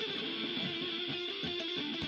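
Electric guitar, a single-cutaway solid-body with twin humbuckers, playing sustained notes: one held note steps down about the start and is held with a slight waver, with softer picked notes underneath.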